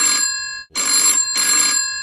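A telephone bell ringing in two bursts: the first stops about half a second in, and after a short break the next ring starts and fades away near the end.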